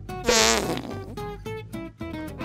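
Cartoon comic sound effect: a short, wobbling rasp about a quarter of a second in, over light plucked-guitar background music.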